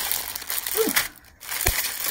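Clear plastic packaging bag crinkling as it is handled, with a soft low thump near the end.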